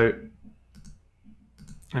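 A few faint clicks from the computer's controls, mostly just before the end, as the image view is zoomed out.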